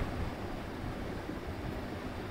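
Steady low background noise with no distinct events: room tone picked up by the microphone during a pause in speech.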